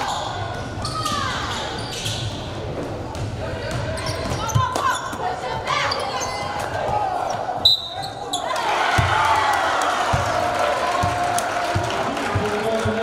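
Live gym sound of a basketball game: a basketball bouncing on a hardwood floor, with repeated knocks, under indistinct voices from players and crowd in a large gym. The sound breaks briefly about eight seconds in.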